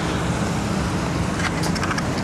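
Steady road traffic noise from cars and taxis in a parking lot, mixed with wind on the microphone.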